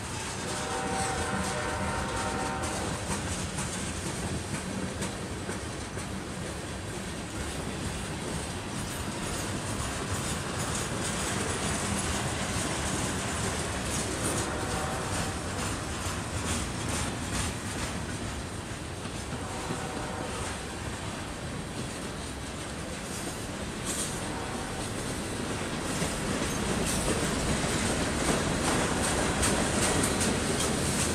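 Freight train cars, tank cars and covered hoppers, rolling past with a steady clatter and rumble of steel wheels on the rails, getting a little louder near the end. Brief squealing tones come in a few times: near the start and again around the middle.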